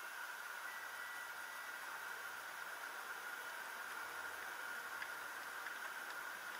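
Steady hiss with a constant high-pitched whine from a car dashcam's own recording, over faint car noise inside the cabin.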